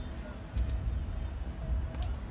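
Street traffic ambience: an uneven low rumble of passing vehicles.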